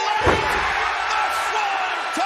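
A wrestler's body landing on an opponent and the wrestling ring canvas from a Swanton Bomb off the top rope: one heavy slam about a quarter second in, over a cheering arena crowd.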